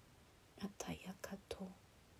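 A woman's voice speaking very softly, close to a whisper, in a few quick syllables around the middle; otherwise near silence.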